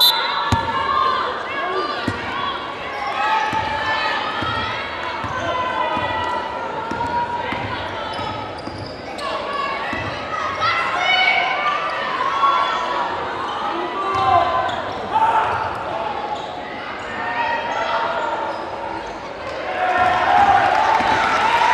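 Indoor basketball game: many indistinct voices from the crowd and players echoing in a gym, with a basketball dribbling on the hardwood court now and then.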